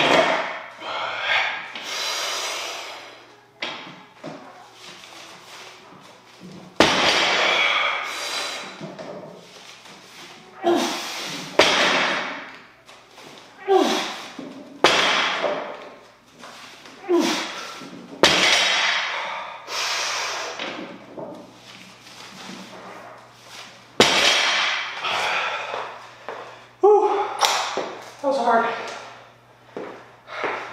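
A heavy loaded barbell, about 370 lb, thudding down onto the floor between deadlift reps, several seconds apart. Between the impacts the lifter breathes hard and grunts with the effort.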